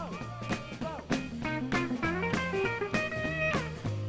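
Live band playing an instrumental break: an electric guitar lead with bent and held notes over bass guitar and drum kit.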